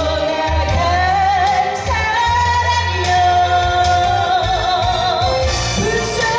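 A woman singing live into a handheld microphone over instrumental accompaniment, holding long notes with vibrato, the longest about halfway through.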